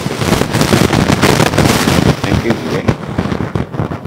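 A dense run of sharp crackles and pops, loud over faint speech, thinning out a little past two seconds in.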